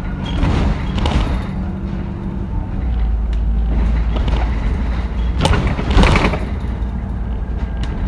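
Alexander Dennis Enviro 400 double-decker bus heard from the upper deck while under way, its diesel engine making a steady low drone. Interior panels rattle throughout, with two louder rattling knocks about five and a half and six seconds in.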